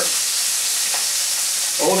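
Food frying, a steady sizzle with no break.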